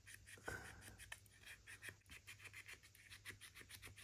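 Faint scratching and light ticking of a scalpel blade working through brick paper over card, several small strokes a second, as window flaps are cut and pushed through.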